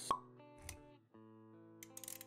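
Animated-intro sound effects over soft background music: a sharp pop just after the start, a low thump a little before halfway, then held synth-like notes, with a few quick clicks near the end.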